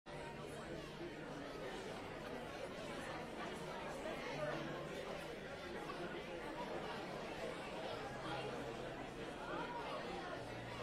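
A congregation chatting before a church service: many people talking at once in a large hall, a steady blur of indistinct conversation with no single voice standing out.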